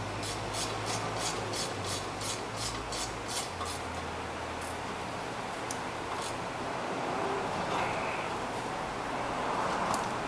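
Swivel-head ratchet clicking as it tightens a brake caliper bracket bolt: an even run of about four clicks a second for the first three or four seconds, then a few scattered single clicks, over a steady hum.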